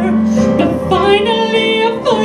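A woman singing solo in a live performance, her voice gliding between held notes over sustained accompanying chords.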